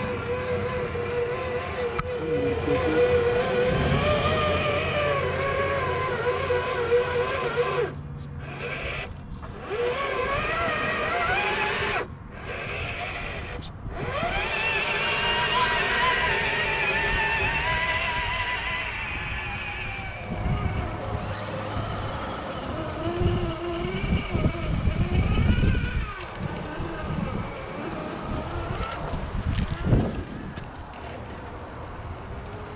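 Whine of a scale RC crawler's electric motor and geared drivetrain, rising and falling in pitch as the throttle is worked while it climbs a dirt bank towing a trailer. The sound cuts out abruptly a few times in the middle, and low wind rumble on the microphone comes in later.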